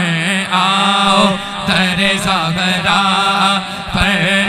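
A man singing a naat through a microphone, drawing out long, wavering, ornamented notes without clear words, over a steady low drone.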